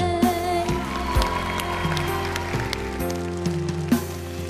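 Instrumental backing music of a song playing in a gap between sung lines, with a steady beat. The audience claps along.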